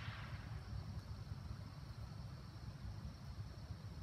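Quiet outdoor background: a steady low rumble with faint hiss and no distinct events, after a brief breathy hiss in the first moment.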